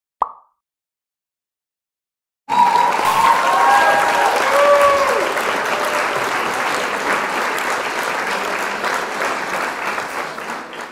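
A short pop sound effect, then about two seconds of silence. Then a crowd's applause and cheering breaks in all at once and carries on steadily through the animated intro.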